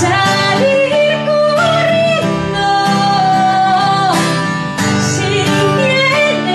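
A woman singing long held notes while strumming an acoustic guitar, the voice stepping between sustained pitches.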